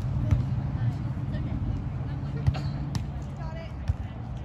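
Beach volleyball being hit back and forth in a rally: a few sharp slaps of hands and arms on the ball, over a steady low rumble, with faint distant voices.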